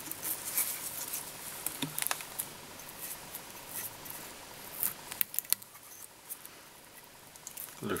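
Faint scattered clicks and soft rustling of fingers dubbing seal's fur onto tying thread and winding it round a hook held in a fly-tying vise.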